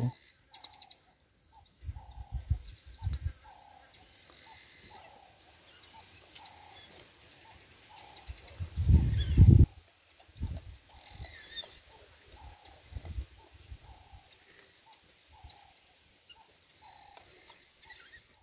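A bird repeats a short call note steadily, about twice a second. Under it are low thumps about two to three seconds in and a louder low rumble about nine seconds in.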